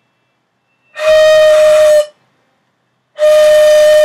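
Dizi (Chinese bamboo flute) blown by a beginner: two held notes on the same pitch, each about a second long, with plenty of breath noise around the tone. The notes sound but are not quite clean, typical of a player still learning to get a note out of the instrument.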